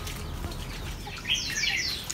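Small birds chirping: a quick burst of short, high, falling chirps about a second and a half in, over faint steady background noise.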